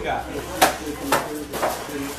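Indistinct voices in a small room, with three sharp clacks about half a second apart.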